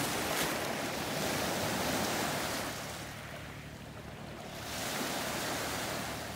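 Sea waves washing, a steady rushing noise that eases off about three seconds in and builds again near five seconds.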